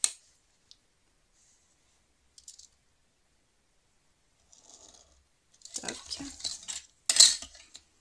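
A clear plastic ruler, a pen and cardstock handled on a cutting mat while marking out: scattered light clicks and knocks, a scraping stretch about six seconds in, and a sharp knock, the loudest sound, near the end.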